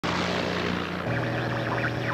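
Steady drone of a single-engine light propeller plane in flight, changing tone about a second in.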